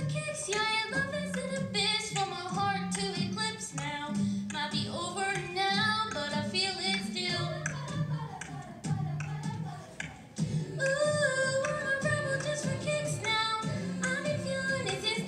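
Children's choir singing a pop song over an accompaniment with a steady beat, a girl soloist amplified through a handheld microphone. The music dips briefly about nine seconds in, then comes back fuller and louder.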